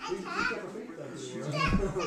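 A young child's voice chattering and calling out during play, with low thuds in the last half-second.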